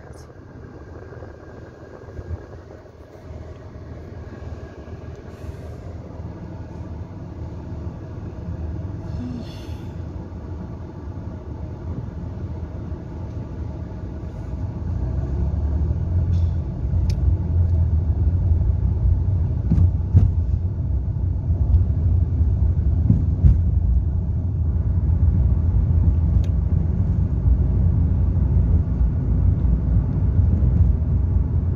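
Car engine and road rumble heard from inside the cabin, quiet while the car waits in traffic, then growing much louder about halfway through as it pulls away and drives on.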